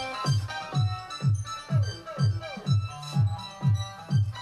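Electronic dance music with a steady kick drum, about two beats a second, and falling synth sweeps, played loud through an active PA speaker.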